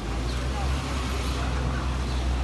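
Low, steady engine rumble of street traffic, with faint voices of passers-by.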